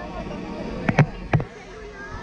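Three short, sharp knocks: two close together about a second in and a third a moment later, over low outdoor background noise.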